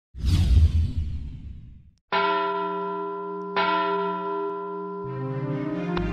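Channel-intro sound effects: a noisy hit that dies away over about two seconds, then two ringing bell-like strikes about a second and a half apart. Music starts rising in near the end.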